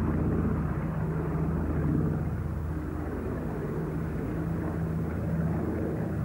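Propeller aircraft engines droning steadily, a low hum over a haze of noise.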